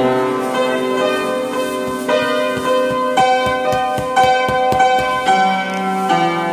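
Upright piano being played: chords held and left ringing, then rapid repeated notes in the low register under sustained higher notes from about two seconds in.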